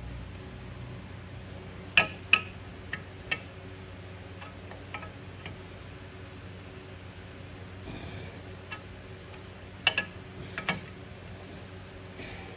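Sharp metal-on-metal clicks and clinks from a four-jaw lathe chuck being worked by hand with its chuck key while a part is dialed in to a dial indicator: a quick run of four about two seconds in, a few lighter ones, and another cluster near the end. A steady low hum runs underneath.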